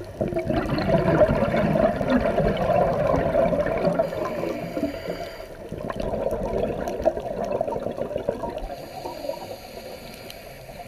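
Scuba regulator exhaust bubbles heard underwater: a bubbling burst that starts just in, eases off about halfway, then a second burst that fades near the end.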